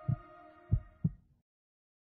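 Heartbeat sound effect: two lub-dub double beats, low thumps about a third of a second apart, over a held music tone that fades away; everything stops about one and a half seconds in.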